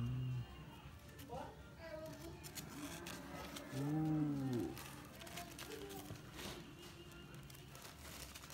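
A man's wordless voice: a short held hum at the very start, and a louder drawn-out sound about four seconds in that rises and then falls in pitch. Faint paper rustling and light clicks of handling follow near the end.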